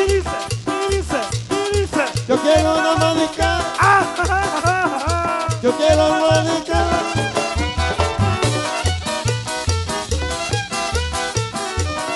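Live chanchona band playing an instrumental passage of a Salvadoran cumbia: violin carrying the melody over upright bass, acoustic guitar and drums. The bass pulses evenly about twice a second.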